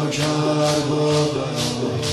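Shia mourning chant (noha): a held, sung vocal line with mourners beating their chests in time, about two strokes a second.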